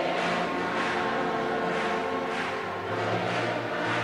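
Soft background music of sustained keyboard chords, with a change of chord about three seconds in.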